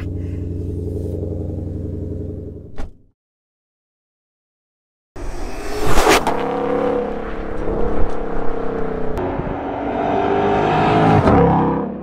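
Shelby GT500's supercharged 5.2-litre V8 idling steadily, heard from inside the cabin, cutting off about three seconds in. After a short silence the car is heard accelerating hard, loud, with a sharp crack soon after it comes in and the revs climbing again near the end.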